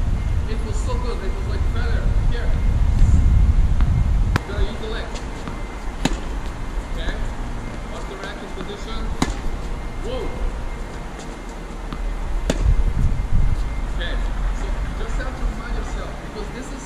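Tennis balls being struck by rackets during a slice rally: four sharp pops a few seconds apart over a steady low rumble.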